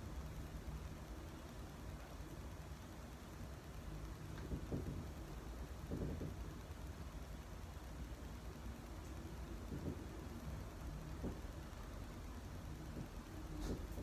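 Low, steady background rumble with a few faint, soft thumps of bare feet stepping and shifting on a wooden floor.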